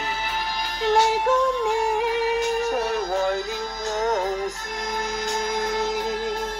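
Live band music: a melody line of held notes sliding between pitches over a sustained accompaniment.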